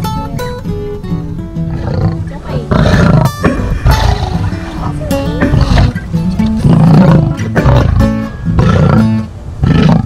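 Plucked acoustic guitar music. From about three seconds in, a lioness gives loud, rough roaring grunts over it, one about every second.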